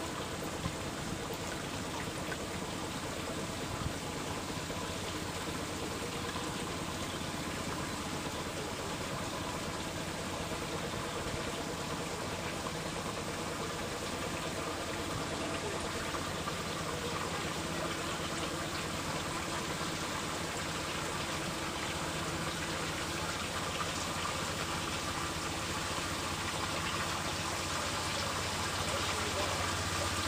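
Steady rush of water in a canal lock, with the low hum of a narrowboat's engine running under it. It grows slightly louder near the end.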